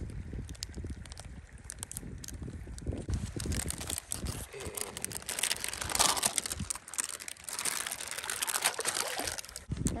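Clear plastic water-purification bag crinkling as a tablet packet is torn open. The bag is then dipped in a stream and fills with trickling, sloshing water, loudest around six seconds in and again near the end.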